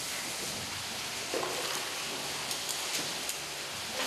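Steady hiss of moving water in a small otter pool, with a few faint light ticks in the second half.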